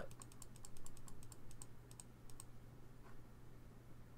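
Rapid clicking of computer keys, about eight clicks a second for roughly two and a half seconds, then stopping, over a faint steady low hum.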